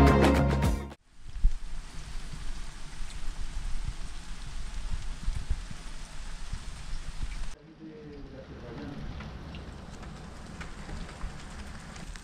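Music that cuts off about a second in, then rain falling steadily with many small irregular drops and spatters. After a cut, more than halfway through, the rain goes on more quietly.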